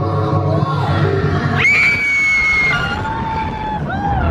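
Riders screaming as the Rock 'n' Roller Coaster launches: a long, high held scream about one and a half seconds in, then a lower held one, over the ride's loud music and rumble.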